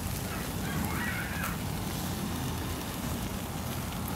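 Beef burger patties sizzling on a charcoal grill, a steady hiss, with a faint short call heard about a second in.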